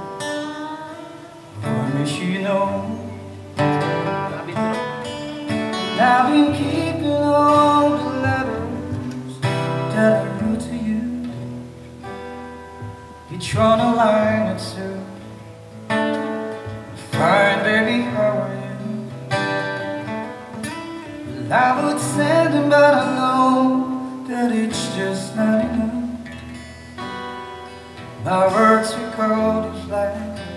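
Live song: a strummed steel-string acoustic guitar with a man singing over it through a microphone.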